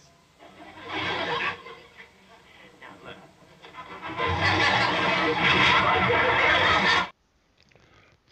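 Soundtrack of a 1960s TV sitcom played from a television set: a short burst of sound about a second in, then loud music mixed with voices from about four seconds in that cuts off abruptly near the end.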